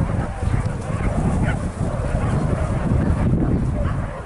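Hunting dogs barking and yelping, faint over a steady low rumble.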